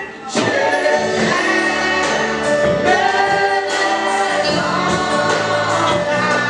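Church worship singing: several voices singing a gospel hymn together with musical accompaniment. There is a brief dip in loudness at the very start, then the singing carries on steadily.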